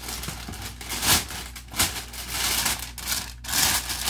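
Clear plastic bag rustling and crinkling as it is handled and pulled out of a cardboard box, with several brief, louder crackles at irregular moments.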